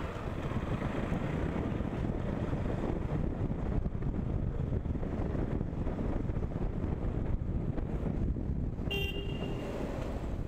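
Motorcycle running at riding speed, heard as a steady rumble mixed with wind noise, with a short horn toot about nine seconds in.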